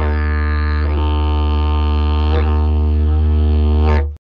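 Didgeridoo playing one steady low drone, its overtones shifting in sweeps about a second in and again about two and a half seconds in.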